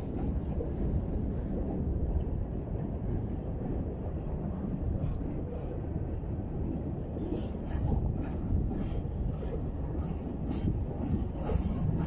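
A long train of empty tank wagons rolling past close by: a steady rumble of steel wheels on the rails, with short clicks and clanks from wheels and couplings, more frequent in the second half.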